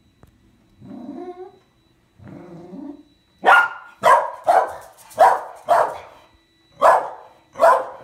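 A corgi gives two low, drawn-out grumbles, then barks seven times in quick, uneven succession.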